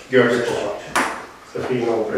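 Speech, with a single sharp tap about halfway through.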